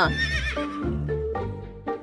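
A horse whinny sound effect: a quavering call that falls away over about half a second at the start, over light background music.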